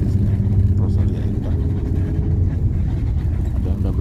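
Steady low drone of a coach bus's engine and road noise, heard from inside the passenger cabin while the bus drives along.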